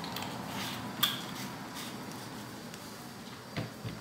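Faint room noise with one light click about a second in and a couple of soft knocks near the end: small handling sounds around a stainless steel pot.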